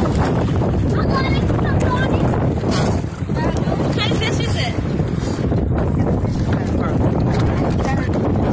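Wind rumbling steadily on a phone microphone, with sea water sloshing around people wading, and indistinct voices.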